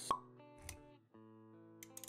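Soft intro music of held notes under an animated logo sequence, with a sharp plop sound effect right at the start and a short low thump a little after half a second. The notes drop out briefly about a second in, then resume.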